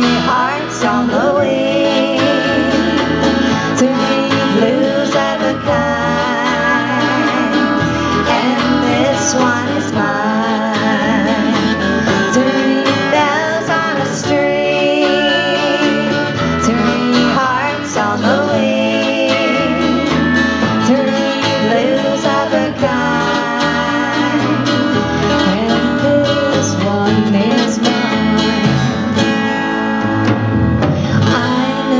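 Live band playing a slow country-style song: acoustic guitar, bass and drums, with a woman singing and wavering vocal lines.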